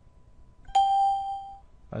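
A single electronic alert chime: one bright ding about three-quarters of a second in, ringing out over about a second.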